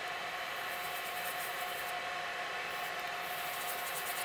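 Steady air hiss with a faint steady hum, the room tone of a clean room's ventilation.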